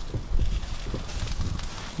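Wind buffeting the microphone, a low rumble, with a few faint ticks.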